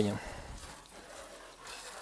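Faint, steady hiss of water spraying from a hose spray-gun nozzle onto potted seedlings.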